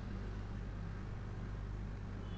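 Steady low hum with a faint even hiss: the background noise of the recording in a pause between words.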